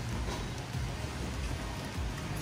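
Steady, even background noise with faint music underneath.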